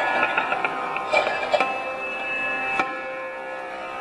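Sarod played live: a quick run of plucked notes in the first second and a half, then single notes left ringing, with tabla accompaniment.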